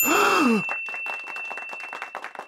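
A long, voiced sigh or groan that starts suddenly, its pitch rising and then falling over about half a second before trailing off into a breathy rasp that fades. A thin, steady high tone runs underneath.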